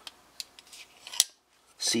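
Titanium framelock folding knife snapping shut: a few faint ticks, then one sharp metallic click about a second in as the blade closes into the handle.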